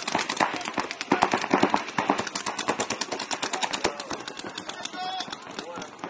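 Paintball markers firing in rapid streams: a dense run of sharp pops, around ten a second, from several guns at once. Shouting voices can be heard over the shots.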